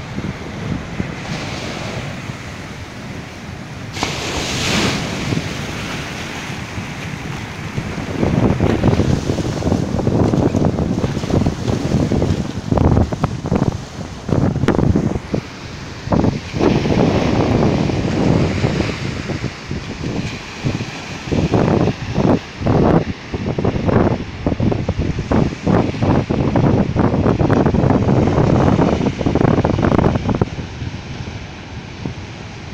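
Heavy ocean swell breaking and surf washing up the beach, with strong wind buffeting the microphone. The wind gusts grow louder and choppier from about eight seconds in.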